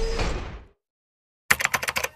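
Intro sound effects: a metallic sliding-door swoosh fades out within the first second, then after a short silence a rapid run of keyboard-typing clicks begins about one and a half seconds in.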